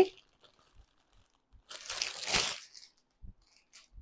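A packed saree and its plastic wrapping crinkling and rustling as it is handled, once for about a second near the middle.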